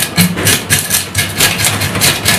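Fish scaler scraping scales off a whole raw fish in a steel tray, in rapid back-and-forth strokes of about six a second.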